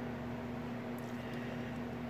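Steady background hum with one low, even tone and a faint hiss.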